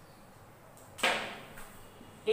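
A whiteboard marker stroking across the board: one quick swish about a second in, fading off quickly, with a few faint scratches around it.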